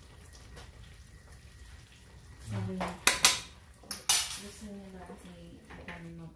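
A metal spoon clinking against a nonstick wok while food is stirred: quiet scraping at first, then a few sharp, loud clinks about halfway through, the last one ringing briefly.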